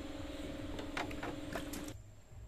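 A steady low hum with several light clicks in the second half, cut off abruptly just before the end.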